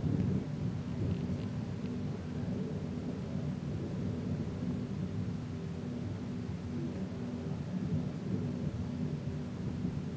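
St Joan funicular car running down its rails, heard from aboard: a steady low rumble with a faint even hum through it.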